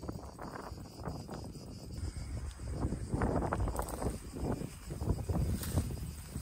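Footsteps rustling through dry grass and brush, with wind rumbling on the microphone; the rustling grows louder and denser about halfway through.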